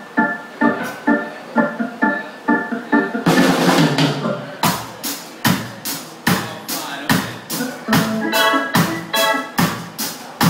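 Live ska band. A keyboard organ plays chord stabs about twice a second. About three seconds in, a drum and cymbal swell leads into the full band, with sharp drum hits about twice a second under the organ chords.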